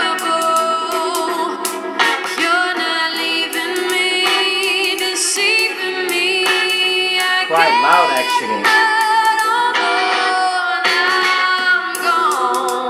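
A song, a singer with guitar, played through a homemade inverted electrostatic loudspeaker panel driven by a small class D amplifier from a phone. It sounds thin, with next to no deep bass, and somewhat shouty, with less top end than an electrostatic usually has. The builder puts this down to the audio signal being fed to the resistively coated membrane.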